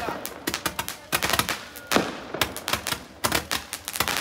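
A handheld firework tube spraying sparks and crackling with rapid, irregular sharp pops.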